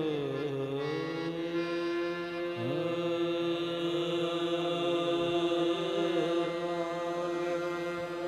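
A singer holds a long, drawn-out note with a slight waver over steady harmonium chords, in the opening alaap of a qawwali-style naat. About two and a half seconds in, a second voice slides up to join the note.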